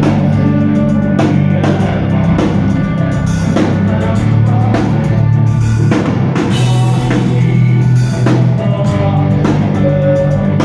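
A hard rock band playing live and loud: distorted electric guitars and bass held over a steady full drum-kit beat.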